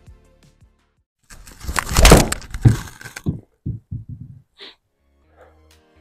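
Golf club striking a Srixon Z-Star XV ball off a hitting mat in an indoor simulator: a loud sharp crack about two seconds in, a second loud hit just after, then a few lighter knocks.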